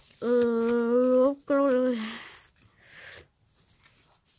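A boy humming two held notes, the second sliding down in pitch at its end, followed by a couple of soft breathy noises.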